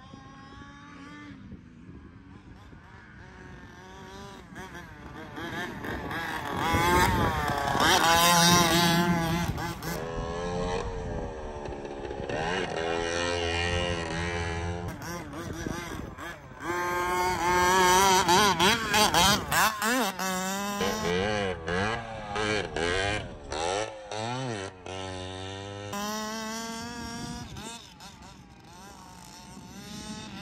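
1/5-scale HPI Baja 5T RC truck's 30.5cc full-mod Zenoah two-stroke engine with a DDM Dominator pipe, revving up and down as the truck is driven over sand. It is faint at first, loud about six to ten seconds in and again around seventeen to twenty-one seconds, with quick throttle blips after that, and fades near the end.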